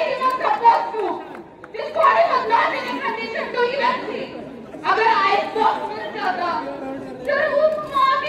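Speech in a large, echoing hall: a voice talking over a microphone and loudspeakers in phrases with short pauses, with chatter from the crowd underneath.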